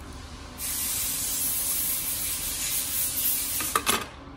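A loud, steady spray hiss starts about half a second in and runs for about three seconds, followed by a few light metal clinks near the end.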